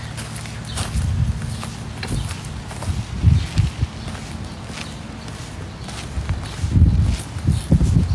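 Footsteps and phone-handling noise on a handheld phone's microphone while walking: irregular low thumps and rustles, strongest about three seconds in and again near the end.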